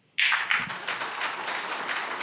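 Audience applause starting suddenly a moment in: many people clapping at once, steady through the rest.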